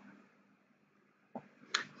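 Near silence, then two short, sharp clicks close together near the end.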